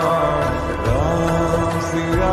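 A Hindi devotional song to Ram (a bhajan) playing as background music. It holds steady notes, with one smooth rising glide in the melody about a second in.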